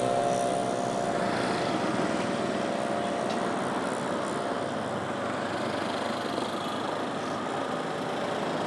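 Steady street traffic noise of passing vehicle engines and tyres.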